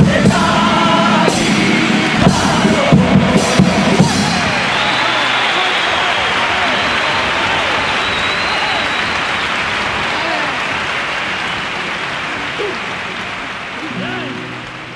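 A comparsa choir sings the closing notes of a pasodoble with its accompaniment, ending in a few sharp accented strikes about four seconds in. Then the live audience applauds and cheers, and the sound slowly fades.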